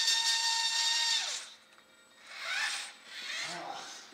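Small electric motor of a radio-controlled model forklift whining at a steady pitch, then winding down in pitch and stopping about a second in.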